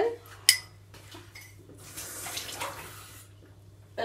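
A single ringing clink of glass on glass about half a second in, then a short soft rush of water in a glass bowl from about two seconds in.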